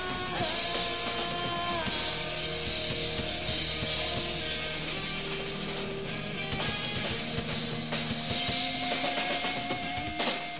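Punk rock band playing live without vocals: electric guitars holding chords over a driving drum kit with bass drum.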